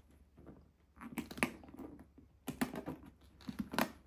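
Handling a structured croc-embossed handbag as its flap is lifted open: rustling with a few clusters of small clicks and knocks.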